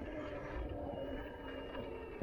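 Steady hum of an electric bike's drive motor pulling at walking pace, over a low rumble from the tyres rolling on a dirt track.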